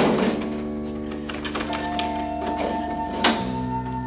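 Dramatic background score of sustained held chords, punctuated by two sharp percussive hits, one at the very start and one a little after three seconds in, each falling where the chord changes.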